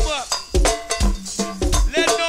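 Live go-go band music: a busy percussion groove with cowbell to the fore and deep drum hits throughout.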